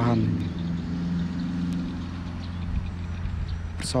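A low, steady engine-like hum, like a motor idling nearby, with the tail of a spoken word at the very start.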